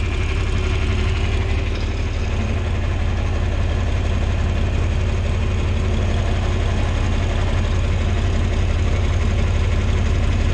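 John Deere 4020 tractor's six-cylinder engine running steadily as the tractor drives, heard from the operator's seat.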